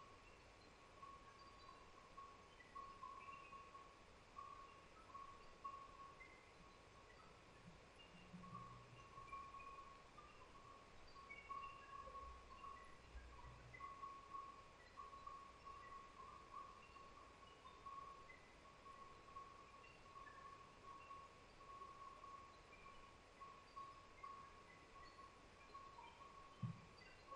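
Near silence: faint room tone, with a faint steady whine that flickers and scattered tiny blips.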